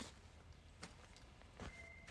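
Near silence: faint background with three soft clicks, a little under a second apart.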